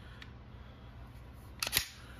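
A handgun being handled over the foam of a hard case: a faint click early, then a quick cluster of sharp clicks near the end, over a steady low hum.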